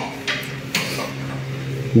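Light metallic clicks as the crankshaft of a bare aluminium Nissan MR20DE block is turned by hand, moving the piston in its bore, over a steady low hum. The engine turns smoothly without binding.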